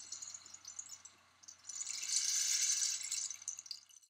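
Running water sound effect, a splashing, crackly hiss. It dips briefly about one and a half seconds in, then swells louder and stops abruptly at the end.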